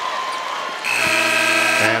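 Arena horn at the scorer's table sounding one steady, many-toned blast for about a second near the middle, signalling a substitution, over the noise of the arena crowd.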